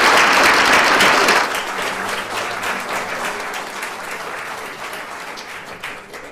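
An audience in a lecture hall applauding. The applause is loud and dense at first, drops off sharply about a second and a half in, and thins to scattered claps that fade out.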